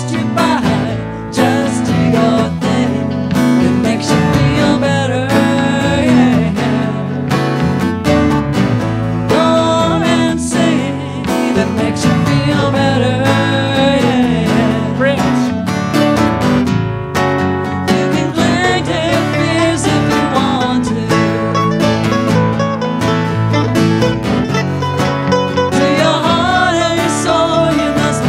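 Live band music: acoustic guitar strumming over electric bass, with two saxophones playing a melody line.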